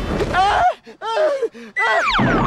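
A man groaning and whimpering in pain in a string of short, wavering cries. For about the first half-second they sit over the fading tail of a loud noisy rumble.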